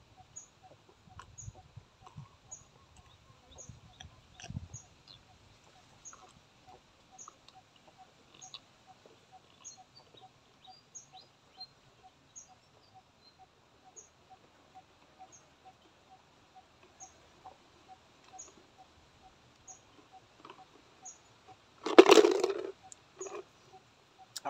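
Faint gulps and swallows as sour palm juice is drunk from a plastic bottle, mostly in the first few seconds. A faint, regular chirping runs in the background, about two short high ticks a second. One loud short burst comes about 22 seconds in.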